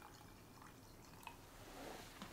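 Very faint trickle of water being poured from a glass measuring jug into a glass jar, with a small tick about a second in.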